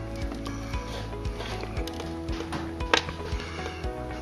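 Soft background music with steady held notes. Over it, a few sharp cracks, the loudest about three seconds in, as a chocolate-coated wafer shell is broken apart by hand.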